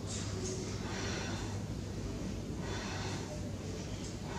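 A woman's audible breathing through the nose, several forceful breaths, inhaling and exhaling in time with a lying yoga leg-extension exercise, with a longer breath about three seconds in. A steady low hum runs underneath.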